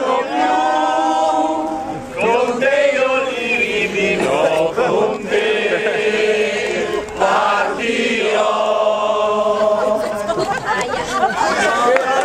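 A group of people singing or chanting together, holding notes in short phrases with brief breaks between them.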